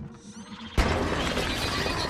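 A sudden loud crash about a second in, followed by a long, slowly fading clatter of something breaking apart and debris falling: a film sound effect of a wall being smashed through.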